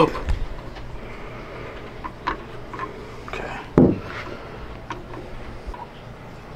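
Light metal clicks and taps as a high-pressure fuel pump's internal sleeve and parts are handled and lifted out of the pump body by hand. A brief vocal sound, the loudest thing heard, comes just before the four-second mark.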